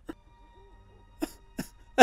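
A man crying with his hand over his mouth: about four short, choked sobbing gasps.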